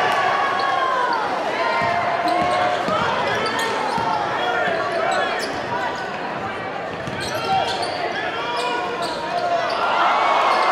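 Basketball game in a gym: voices shouting over the play, with a basketball bouncing on the wooden court.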